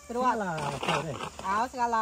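A person's voice talking, with rising and falling pitch; no other sound stands out.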